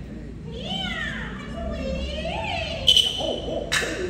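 A Hainanese opera performer's high-pitched sung or declaimed voice, sweeping up and down in pitch. Two sharp percussion strikes follow near the end.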